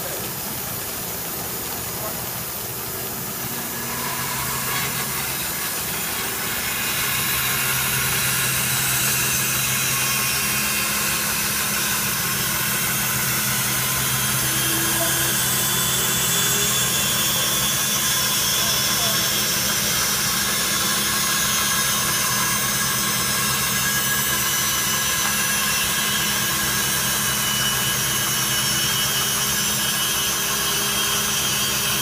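Rockwell vertical band saw resawing a wide board in half, a steady rush of cutting over the machine's hum. The sound swells over the first several seconds and then holds even as the board is fed through.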